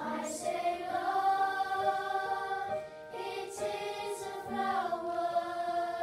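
Children's choir singing a slow melody in long held notes, with a short break for breath about three seconds in.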